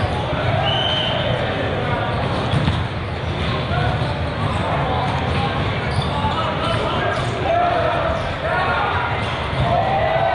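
Indoor volleyball play in a large, echoing hall: players and spectators calling out over a steady babble of voices, with sharp hits of the ball now and then.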